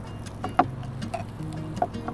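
Kitchen knife chopping garlic on a cutting board: a run of short, irregular sharp taps of the blade hitting the board. The taps sit over background music.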